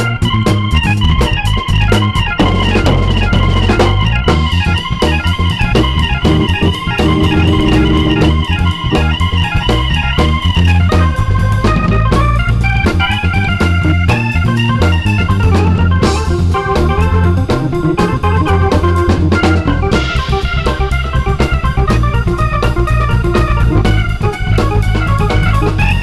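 Live smooth jazz from a keyboard, electric bass and drum kit trio, with the electronic keyboard carrying the melody over a steady bass line and drums.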